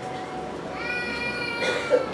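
A young child's high-pitched, drawn-out cry, one held note lasting about a second in the middle.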